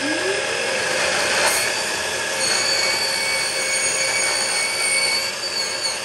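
Festool sliding miter saw cutting through 4-inch PVC pipe. The motor winds up with a rising whine in the first second, then runs steadily and loudly as the blade goes through the pipe.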